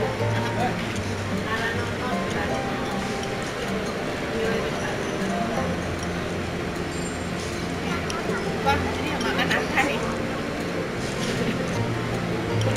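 Background music playing with the voices of other people in a busy restaurant room.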